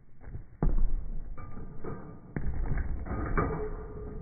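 Slowed-down audio of a basketball shot: two deep, drawn-out thuds of the ball striking the hoop, the first a little under a second in and the second about two and a half seconds in, each trailing a low rumble, then a faint lingering ring near the end.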